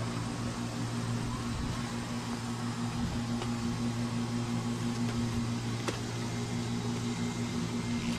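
A steady low hum with an even background hiss, and a single faint click about six seconds in.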